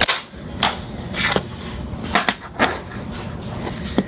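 Dominoes being set upright on a wooden tabletop: a string of light clicks and taps, hard tile against wood and against other tiles, spread through the few seconds.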